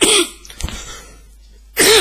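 A man coughing twice, once right at the start and again near the end.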